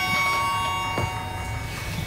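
A chime, most likely the cable car's signal, dies away: several clear ringing tones struck just before fade out over about a second and a half. A single sharp click comes about a second in.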